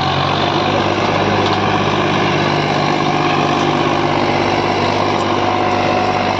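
Massey Ferguson 8055 tractor's diesel engine running steadily under load while pulling a 9x9 disc harrow through the soil.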